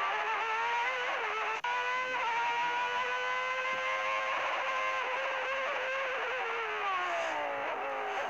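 Formula One car engine heard from the onboard camera, held high in the revs with a brief cut about one and a half seconds in, then the note falling near the end as the car slows for a corner.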